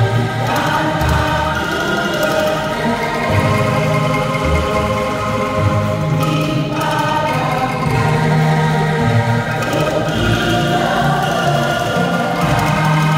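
Bamboo angklung ensemble playing a slow hymn tune, the shaken rattling tubes sounding as sustained chords that change every second or two.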